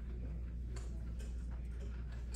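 Scattered, irregular light clicks of laptop keys and trackpads over a steady low electrical hum.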